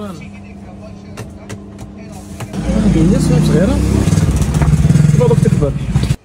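Gas burner under a large sac griddle running with a loud, low roar from about two and a half seconds in, with voices over it.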